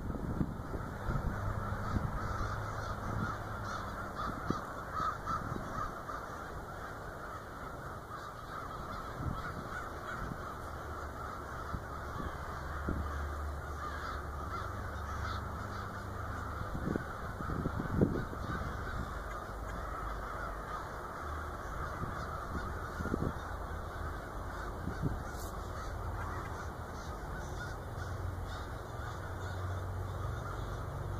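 A large flock of crows flying over at dusk, cawing continuously as many overlapping calls in a steady din. A few short knocks stand out over it, the sharpest a little past halfway.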